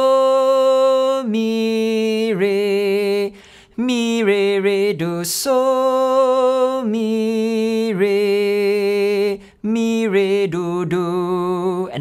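A man singing a simple melody unaccompanied, in long held notes that step down between a few pitches, phrased with short breaths between.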